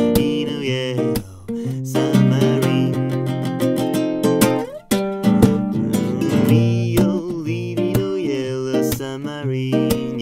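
Nylon-string classical guitar strummed in an instrumental break, chords struck in a steady rhythm. The playing drops off briefly about a second in and again just before halfway.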